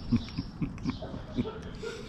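A man chuckling softly with his mouth closed while chewing food, as a run of short, breathy pulses.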